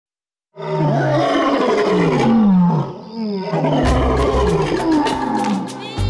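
A male lion roaring: deep calls that fall in pitch, over about two seconds. About four seconds in, music with a strong percussive beat comes in.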